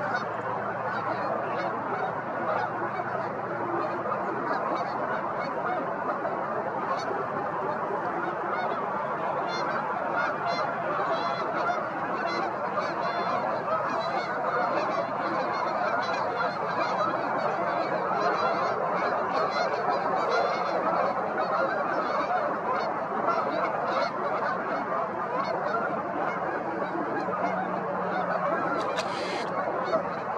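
A large flock of geese honking, many calls overlapping in a dense, unbroken din.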